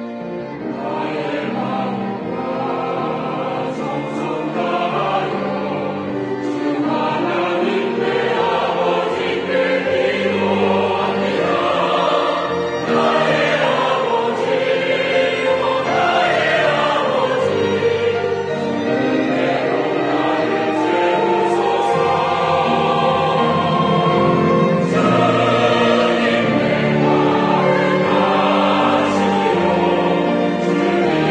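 A large church choir sings a worship anthem in Korean in parts, with piano accompaniment. The singing swells gradually louder.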